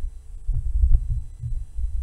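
Low, uneven thumps and rumble on the desk microphone, about two a second, with nothing above the deep bass: handling or bumping noise carried through the mic stand.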